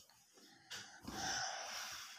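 Printed dress fabric rustling as it is flipped over and spread out by hand: a soft swish of about a second.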